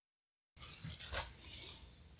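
Dead silence for about half a second, then faint handling noises from a small plastic bag being held and worked open, with a brief crinkle about a second in.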